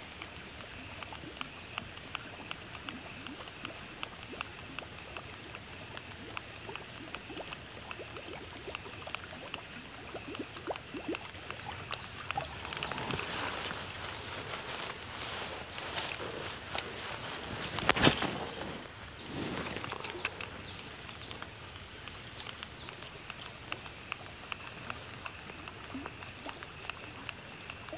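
Insects drone steadily at a high pitch, with light ticking from a spinning reel as a fishing lure is wound in. There is one sharp knock about eighteen seconds in.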